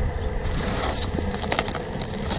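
A hand scooping a handful of tumbled sea glass out of a plastic tub, the small glass pieces crunching and clicking against each other. It starts about half a second in and ends in a quick run of sharp clicks.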